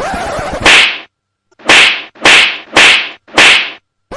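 Edited-in comedy sound effects: a rushing swish that peaks sharply under a second in, then, after a brief silence, four short whip-like cracking swishes about half a second apart.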